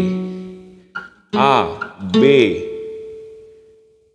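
Acoustic guitar notes picked one at a time, each ringing and fading, stepping up the natural notes G, A, B along one string. The last note rings on longest and dies away near the end.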